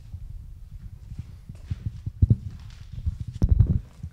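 Handling noise on a handheld microphone: low, irregular thumps and knocks as its holder moves and bends down, loudest near the end, with a couple of sharp clicks.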